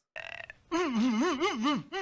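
Cartoon sound clip: a short breathy noise, then a long wobbling vocal sound whose pitch rises and falls about four times a second, heard as burp-like.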